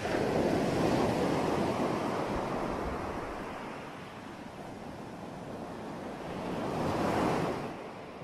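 Ocean surf breaking on a beach: a wave comes in loud at the start and washes out, and a second wave swells and breaks about seven seconds in.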